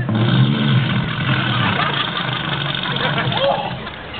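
The motor of a motorized piano car running steadily as the vehicle drives and turns, with a low hum that eases off after about a second and a half and a slight drop in level near the end.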